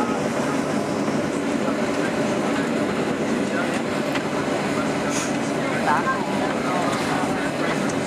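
Cabin noise of a Boeing 737-800 taxiing, heard from a window seat over the wing: the steady drone of its CFM56 engines at idle, with passengers' voices mixed in.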